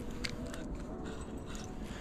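Quiet handling of a spinning reel on a fishing rod: a few light clicks over a low steady background.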